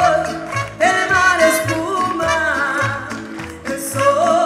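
A woman singing live into a microphone over amplified Latin music, holding long notes with vibrato above a repeating bass line.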